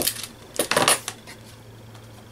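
A metal-framed hand roller (brayer) being handled and set down on the craft table: a sharp click at the start, then a short metallic clatter a little over half a second in.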